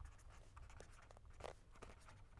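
Pen writing on paper: faint, irregular scratching strokes as words are written out by hand.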